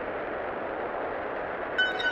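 A steady rushing noise, like a rumbling train-interior field recording, opens the track. Near the end, clear chiming electronic tones come in on top of it.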